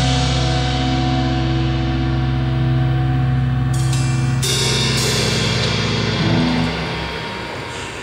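Live rock band with electric guitar and bass holding a sustained chord while cymbals crash and wash over it a little under four seconds in and again around five seconds; the sound dies away near the end.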